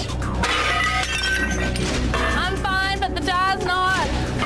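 A heavy earthenware lid clatters against the rim of a ceramic jar with a sharp crash just at the start, over background music.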